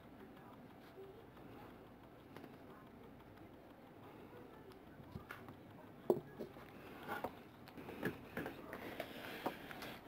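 Faint room tone, with a few soft, scattered clicks and taps in the second half.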